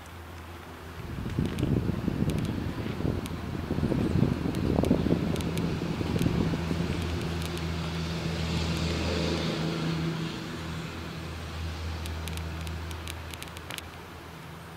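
Subaru WRX STI's turbocharged flat-four engine idling steadily, heard from behind the car at its exhaust. During the first five seconds there is irregular, louder noise over the idle.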